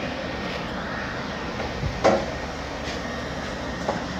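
Steady mechanical hum in the background, with two knocks of a knife on a plastic cutting board: one about halfway through and a smaller one near the end.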